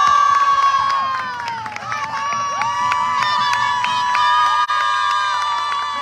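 A crowd cheering, with many high voices holding long, overlapping shouts.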